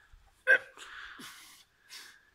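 A man's short, sharp grunt of effort about half a second in, followed by a forceful breath out, as he strains to press a heavy log overhead.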